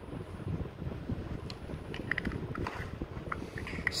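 Handling of a Maped Igloo pencil sharpener: its clear orange plastic shavings container is fitted onto the orange body, giving a few faint plastic clicks in the middle. Under it runs a low rumble of handling noise on the microphone.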